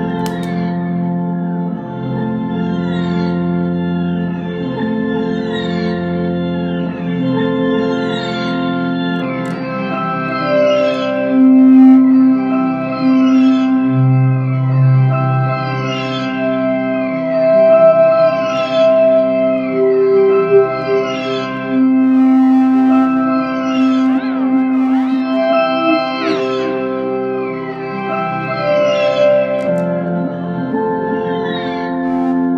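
Shovel-and-string instrument played through pitch-shifter, delay and looper pedals: a looped, organ-like chord progression of sustained tones changing every couple of seconds. From about eight seconds in, repeated high falling swoops are layered on top.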